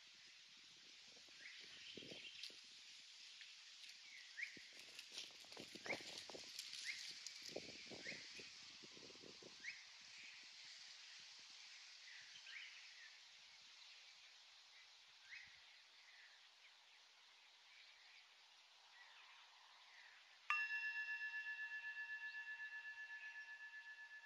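Faint bird chirps and a few soft rustles in dry leaf litter. About twenty seconds in, a struck singing bowl rings out with several tones and a slow, pulsing decay, the signal to come out of the held yin pose.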